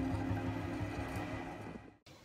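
Music from a bowed ice cello with a held low note, dying away steadily and fading to near silence just before the end.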